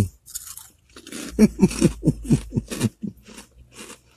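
Crunching as a woman chews potato chips, then a run of short laughs, each falling in pitch, about four a second, with her mouth full.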